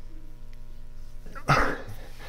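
A single short, loud vocal burst about one and a half seconds in, over a low steady room hum.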